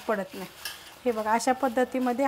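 Crisp fried gram-flour sev being crushed by hand on a steel plate: a short dry crackling rustle, clearest about half a second in.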